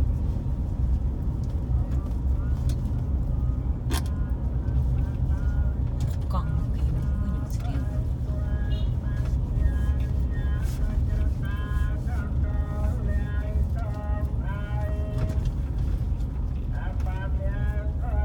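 Steady low rumble of a vehicle driving along a road, with a person's voice talking or singing over it from about four seconds in.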